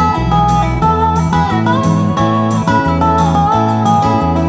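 Lap slide guitar playing an instrumental solo, its melody notes gliding up and down between pitches over sustained low bass notes.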